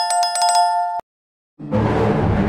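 A notification-bell sound effect: a bright, rapidly struck bell rings for about a second and cuts off abruptly. After a short silence, loud music with a deep, low-pitched sound starts about a second and a half in.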